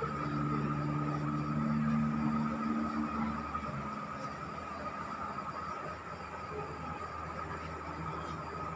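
A vehicle engine's steady low drone, several held pitches, that stops about three and a half seconds in, over a continuous thin high tone and a low even hum of city traffic.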